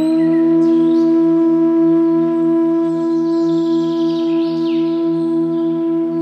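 Meditation music: a long held flute note over a low, evenly pulsing drone, with faint bird chirps mixed in.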